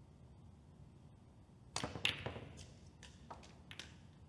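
A snooker break-off shot. The cue tip clicks on the cue ball about two seconds in, and a moment later there is a louder crack as the cue ball strikes the pack of reds. A scatter of lighter clicks follows as the balls collide and rebound off the cushions.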